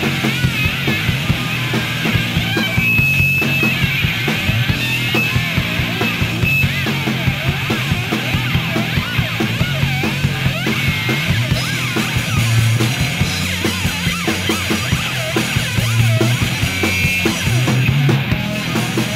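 Live punk rock band playing an instrumental passage: electric guitars, bass and drums at a steady loud level, with a lead guitar line wavering and bending in pitch.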